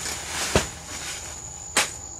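Machete cutting at a banana plant: a swish and a heavy chop about half a second in, then a sharper strike near the end. A steady high-pitched insect call runs underneath.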